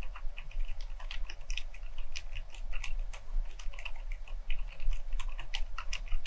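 Continuous typing on an FL ESPORTS CMK75 mechanical keyboard fitted with fully lubricated silent lime switches. It is a steady stream of short, very quiet key strokes.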